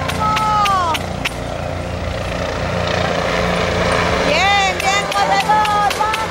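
Spectators shouting drawn-out cheers of encouragement: one call near the start and a run of calls over the last couple of seconds, over a steady low drone.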